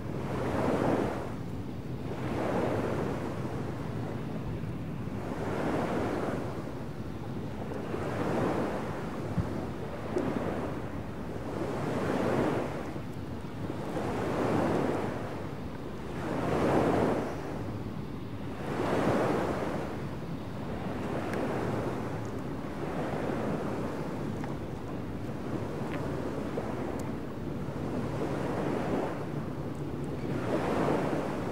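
Field recording of waves washing in, with a swell of water noise about every two seconds over a steady wind hiss.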